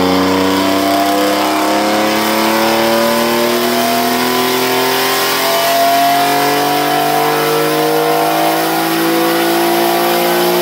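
Dodge Stealth Twin Turbo's twin-turbocharged 3.0-litre V6 making a pull on a chassis dyno, its note climbing slowly and steadily in pitch as the revs rise. Boost is held to the 20 psi wastegate spring because the boost-control (MAC) solenoid is dead.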